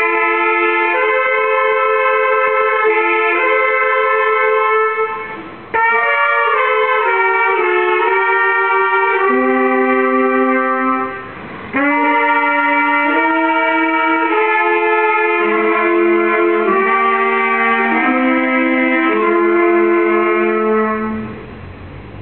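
A small ensemble of trumpets and a saxophone playing a tune in several parts, in long held chords. It comes in three phrases with short breaks between them.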